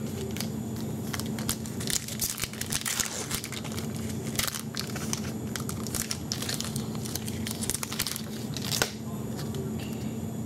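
A foil hockey-card pack wrapper being torn open and crinkled by hand. Many short crackles, busiest in the first half, with one louder crackle near the end.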